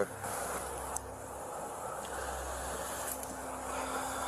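Steady background hiss and low hum picked up by a police body-camera microphone outdoors at night, with a man sighing near the end.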